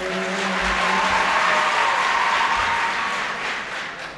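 Audience applauding, building in the first second, holding steady and dying away near the end.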